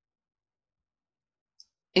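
Near silence, broken by a single faint, short click of a computer mouse near the end, as a field is unticked in a software list.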